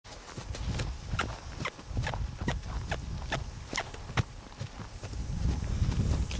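Footsteps crunching on dry, dusty ground, an even walking rhythm of a little over two steps a second that fades out about four seconds in, over a low steady rumble.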